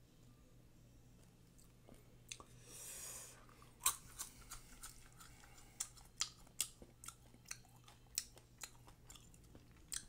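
Close-up chewing of a dried, salted grasshopper. It is quiet at first, with a brief hiss near three seconds, then a run of sharp, irregular crisp crunches through the second half.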